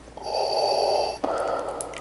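A man breathing heavily and slowly close to the microphone from behind a plastic face mask: one long breath of about a second, then a sharper breath that fades out, in a slow repeating cycle.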